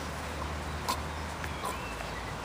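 Outdoor background: a low steady rumble with two faint short clicks, one about a second in and another past halfway.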